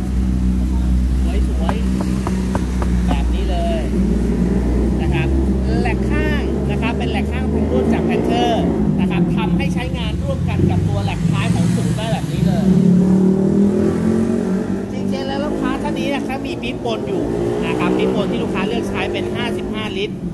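Motor vehicle engines running close by, a heavy low rumble for the first eight seconds or so that then gives way to shifting engine tones, with people talking over it.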